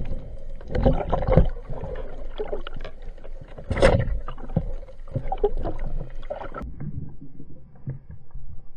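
Underwater noise picked up by a diver's camera: a low rumble of moving water with irregular muffled knocks and clicks. There is one sharper crack about four seconds in, and the clicking thins out near the end.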